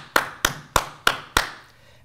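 Hand claps in a steady rhythm, about three a second: five sharp claps close to a microphone.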